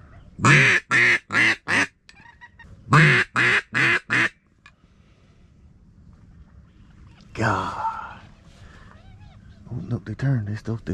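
Handheld duck call blown by a hunter at circling ducks: two loud series of four short quacks each, a second or so apart, then a longer, softer sound later on.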